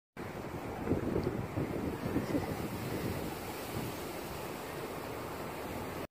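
Wind buffeting the microphone in gusts of low rumble, heaviest in the first half, over a steady outdoor hiss; the sound cuts off suddenly at the end.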